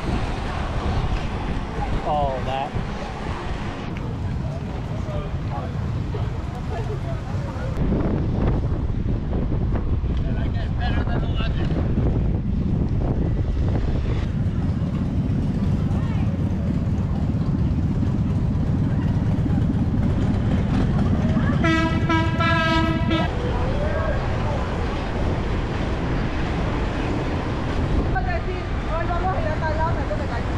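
Steady low rumble of inline skate wheels rolling over asphalt, growing louder about a quarter of the way in. About two-thirds of the way through, a horn sounds once, a single held note lasting about a second and a half.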